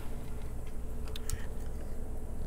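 Faint, scattered small clicks of metal milling-machine tooling being handled, over a low steady hum.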